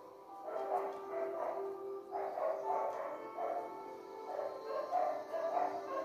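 Several dogs barking and yapping over and over, faint beneath a steady tone.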